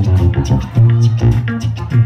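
Live band playing an instrumental passage with electric guitar and Nord Stage keyboard over a prominent bass line and a steady beat.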